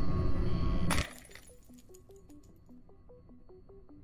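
Loud, dense outro music that cuts off with a single glass-shattering crash about a second in, matching the monitor screen cracking. A much quieter melody of short, evenly spaced notes follows.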